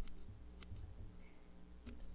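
Curved scissors snipping through spun deer hair: two faint, sharp snips about a second apart, as the muddler's head is trimmed into rough shape.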